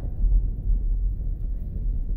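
Steady low rumble of a car's road and engine noise, heard from inside the cabin while driving.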